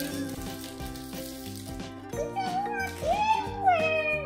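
Background music with a steady beat, and crackly crinkling of the paper wrapping of a LOL Surprise ball being peeled open in the first half. A high pitched melody or voice rises and falls in the second half.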